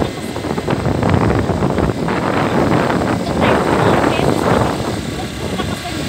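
Wind rushing and buffeting on a phone's microphone during a fast open-air ride, loud and unbroken, with a woman's voice talking over it.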